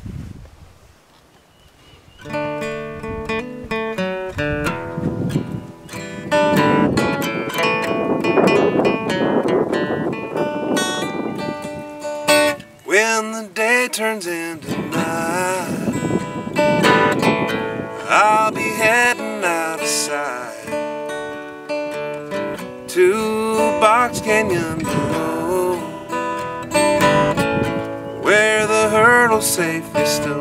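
Acoustic guitar playing the instrumental introduction of a slow country-blues song, starting about two seconds in after a brief quiet pause.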